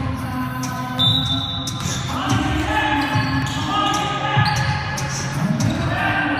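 Basketball bouncing on a hardwood gym floor in play, with scattered sharp knocks and players' voices ringing in a large gym.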